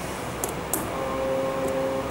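Room tone with a steady hiss, two light clicks about half a second in, then a steady held hum for the second half.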